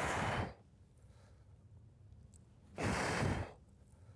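A man breathing hard while doing barbell squat reps: two loud breaths, one at the start and one about three seconds later.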